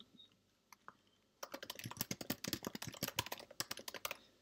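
Typing on a computer keyboard: a quick run of key clicks starting about a second and a half in, as a short phrase is typed.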